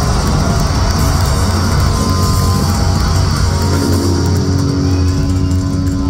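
A live heavy metal band, with electric guitar, bass and drums, playing loud through a large venue's sound system, heard from the audience. A held note rings on steadily from a little past halfway.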